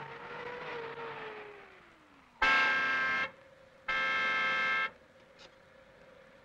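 A car pulling up, its engine note falling as it slows, then its horn sounding twice, two steady blasts of about a second each with a short gap between.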